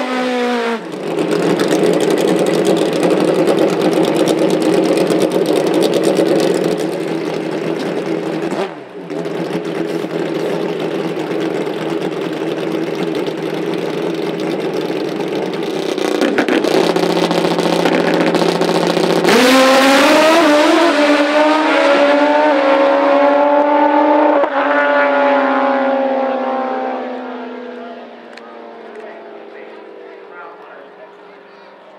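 A pair of nitrous-injected Pro Nitrous drag-racing motorcycles. Their engines are held at high revs through a tire-smoking burnout. About 19 seconds in they launch together, the engine pitch rising hard as they accelerate, then fading away as they run off down the track.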